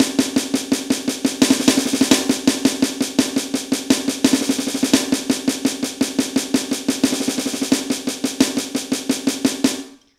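Snare sound from an electronic drum kit's pad, played with sticks as a fast, even run of strokes: a hand-speed drill of sixteenth notes with a burst of thirty-second notes on the first beat of each bar, one bar as single strokes and the next as doubles. The playing stops suddenly near the end.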